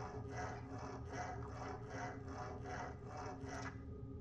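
Rhythmic scrubbing strokes, about two to three a second, stopping shortly before the end, over a steady low hum.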